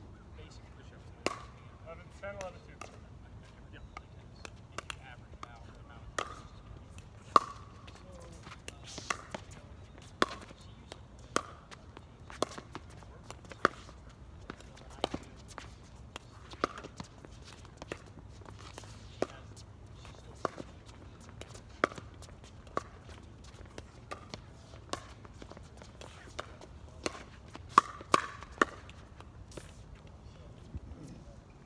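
Plastic pickleball being hit back and forth with paddles in a doubles rally: sharp, hollow pops roughly once a second, with a quick burst of three near the end.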